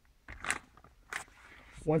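Clear plastic packaging bags crinkling as they are handled and put down, in about three short rustles.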